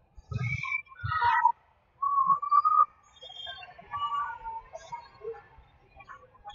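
Volleyball rally in a school gym: a couple of short thuds with high-pitched calls in the first second and a half, then a held high call. After that comes a spread of overlapping voices from players and spectators.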